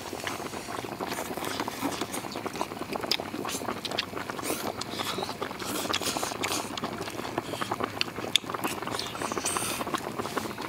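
Thin noodles being slurped and chewed, with a few longer slurps and many small clicks and knocks throughout.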